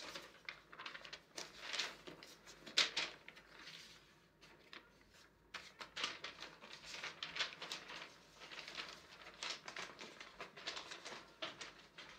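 Faint, irregular rustling and crinkling of loose paper sheets and bedclothes being gathered and handled, with a brief lull about four seconds in.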